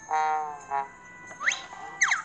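Cartoon sound effects from an animated story app: a short brassy pitched tone at the start and a brief second one, then quick whistle-like glides sweeping upward near the end.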